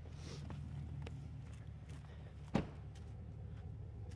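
Pickup truck engine idling, a low steady hum, with footsteps on dirt and one sharp knock about two and a half seconds in.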